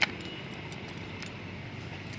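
A motorcycle ignition key being handled in its switch: one sharp click at the start, then a few lighter clicks and jingles of the key ring over a steady low background noise.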